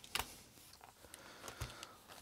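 Faint handling clicks as fingers work an insulating sleeve over a switching transistor on a circuit board, with one sharper click just after the start, a soft knock later on and another click near the end.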